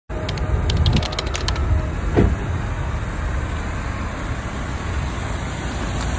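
Steady low rumble of a car engine running, with a few light clicks in the first second or two and a single knock about two seconds in.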